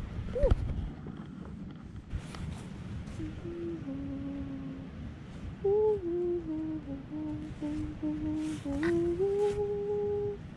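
A person humming a slow tune, held notes stepping up and down in pitch, starting a few seconds in. A few short knocks and rustles near the start.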